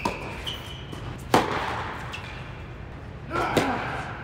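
Tennis ball hits and bounces echoing around an indoor tennis hall: a sharp crack just over a second in is the loudest, with a cluster of hits near the end.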